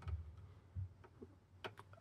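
Faint clicks and ticks of a screwdriver working a screw out of an Allen-Bradley 1746-P2 power supply's circuit board, with a soft knock or two and then a few quick clicks near the end.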